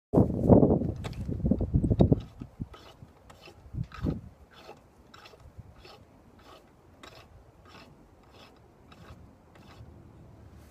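A flag rope pulled hand over hand through a pulley on a post, hoisting a flag. There is loud rubbing and knocking in the first two seconds and another knock about four seconds in, then a regular faint clicking about two to three times a second.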